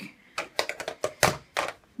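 A quick, irregular run of light clicks and taps, about eight in under two seconds: small hard objects being handled and set down.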